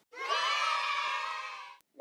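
A group of children shouting together in one long cheer, held for about a second and a half and then cut off suddenly.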